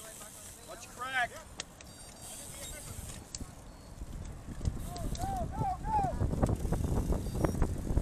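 Riders' voices in a cycling pack: one short call about a second in, then three brief calls a little after halfway. From about halfway a low rumble of wind on the microphone builds as the group gets rolling, with scattered clicks, and becomes the loudest sound.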